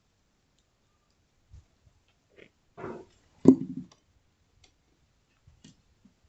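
A few scattered light clicks and one sharp knock about three and a half seconds in, with long near-silent gaps between them.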